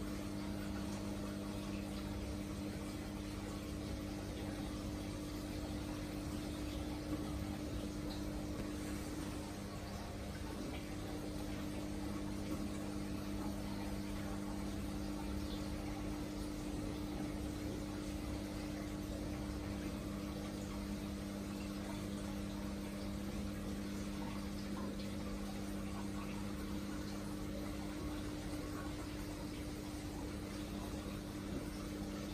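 Aquarium pump and filtration running: a steady low hum with a constant wash of moving water.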